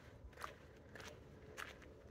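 Faint footsteps on dry ground, a few soft, irregular steps.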